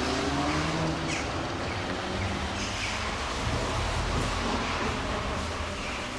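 A car engine running as it passes on the street, over a steady low rumble of traffic.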